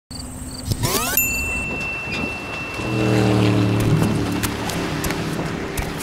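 Sound-design bed under a seaside opening: high, evenly repeated cricket-like chirps, a quick rising whoosh about a second in, then from about three seconds a long, low, steady held tone.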